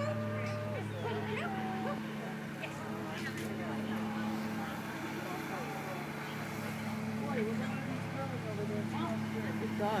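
Distant voices and a dog barking now and then, over a steady low hum.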